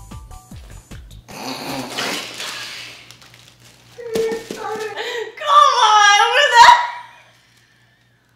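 Two women bursting into loud, high-pitched laughter with mouths full of water, a breathy spluttering burst first, then shrieking laughter that is loudest about six seconds in and stops suddenly about a second before the end. Background music with a beat plays in the first second.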